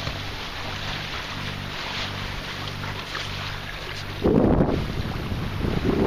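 A sailboat's engine running steadily, a low hum under the rush of wind and water, with two louder bursts of wind noise on the microphone, about four seconds in and at the very end.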